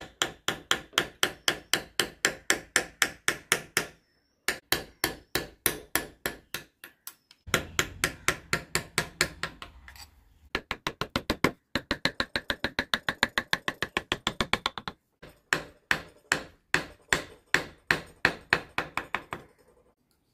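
A carving chisel being tapped into wood in fast, even strokes, about four or five a second, in runs of a few seconds with short pauses between them.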